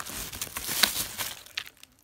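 Plastic packaging crinkling and rustling with a few sharp clicks as packs of Scentsy wax are handled; it dies away after about a second and a half.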